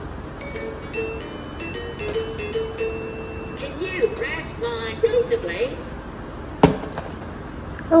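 An electronic toy plays a short beeping tune of stepped notes, followed by a couple of seconds of chirpy electronic sounds. A single sharp knock comes about two-thirds of the way through, a toy thrown down onto the floor.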